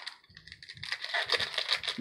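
Trading cards being flipped through by hand, a quick run of light clicks and rustles as the cards slide over one another, starting about half a second in.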